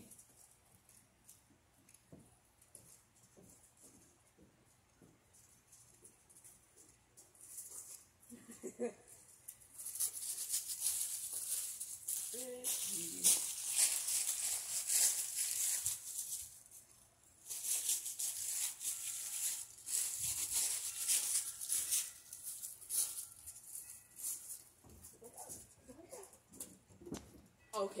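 Dry leaves rustling and crackling in two long stretches of several seconds each, with faint, short voice-like sounds in between.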